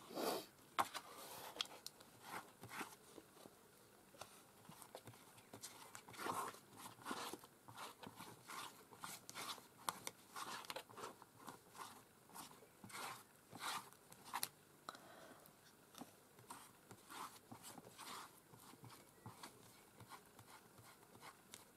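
Quiet, irregular rustles and scrapes of paper being handled and smoothed by hand, and a flat-tipped brush spreading gel medium along a paper journal's spine. The loudest rustling comes right at the start.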